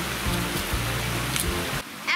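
Water pouring steadily through and over a beaver dam of sticks in a small stream, under background music with low steady notes that stops near the end.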